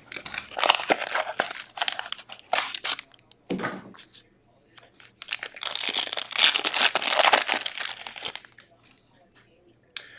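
Plastic shrink-wrap crinkling and tearing as a sealed trading-card mini box is unwrapped by hand, in two spells of crackling, the second a little past the middle.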